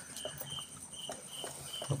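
Mother dachshund licking her newborn puppies: faint, soft wet clicks and smacks, with a faint high peep repeating about twice a second.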